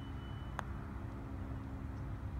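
A putter striking a golf ball once: a single sharp click about half a second in, over a steady low rumble.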